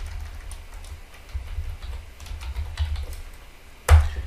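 Computer keyboard typing: scattered light key clicks, then one sharper, louder keystroke just before the end as the command is entered.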